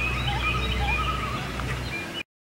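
Birds calling: several overlapping short chirps and warbling whistles, over a steady low hum.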